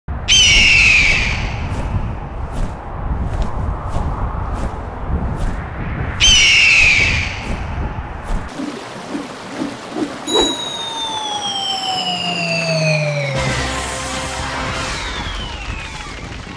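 Two loud eagle screeches, the first right at the start and the second about six seconds later, each falling in pitch, over a low rumbling noise. Later a long whistle slides slowly down in pitch, with a burst of noise near the end.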